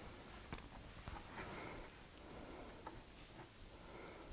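Faint, sparse light clicks and taps of a small tool and fingers working in a plastic seed-starting tray while a seed is pressed into the soil, over quiet room tone.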